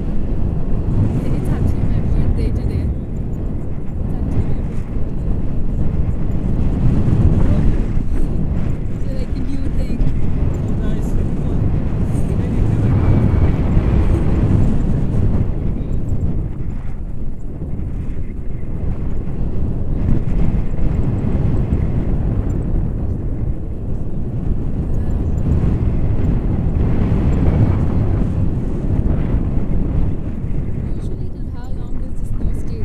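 Wind buffeting the microphone of a camera carried through the air on a paraglider in flight: a loud, steady low rumble that swells and eases every few seconds.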